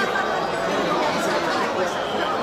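Steady hubbub of many people talking at once in a large hall, with no single voice standing out.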